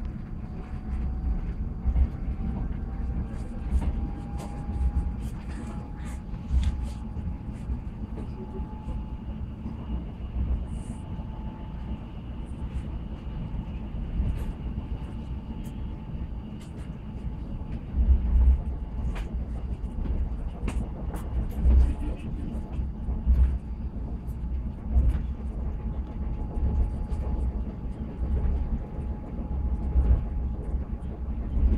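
Running noise inside a WKD electric commuter train between stations: a steady low rumble from the wheels and bogies, with irregular clicks and a few louder knocks from the rail joints, and a faint steady whine underneath.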